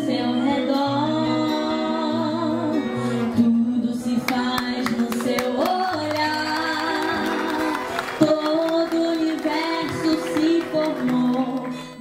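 A young woman singing a hymn solo into a microphone, over instrumental accompaniment of long held bass notes. The music fades out near the end.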